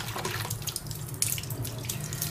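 Water jet from a mini brushless DC pump (DC30A-1230) spraying up out of a basin and splashing back down, a continuous splashing and pattering of water.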